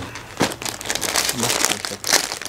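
Clear plastic packaging crinkling as a saree in its plastic cover is handled and lifted out of a cardboard box, with an irregular crackle and one sharper crackle early on.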